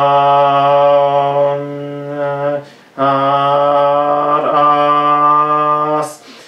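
A man chanting a mantra on one steady low pitch. There are two long held notes, with a short breath between them about halfway through.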